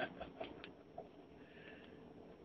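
A man's soft laughter trailing off in short fading bursts in the first half second or so, then quiet apart from a faint click about a second in.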